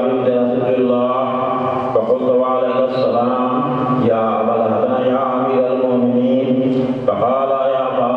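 A man chanting an Islamic devotional recitation into a microphone in a melodic voice, in long held phrases broken by short breaths about every two to three seconds.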